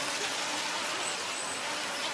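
Radio-controlled model speedboat running across a shallow pool, a steady rushing hiss with a faint high whine about a second in.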